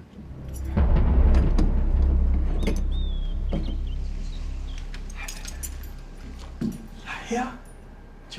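A key clicking and rattling in the lock of a heavy studded double door, then a deep low rumble and a short high creak as the door is pulled open.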